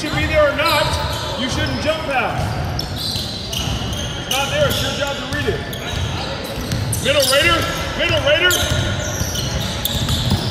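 A basketball dribbling and bouncing on a hardwood gym floor, with indistinct voices in a large echoing hall.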